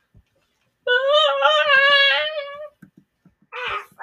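One long, high, wavering wail, held for about two seconds starting about a second in, followed near the end by a short rough burst of sound.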